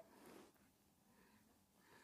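Near silence: room tone, with a faint soft noise in the first half second.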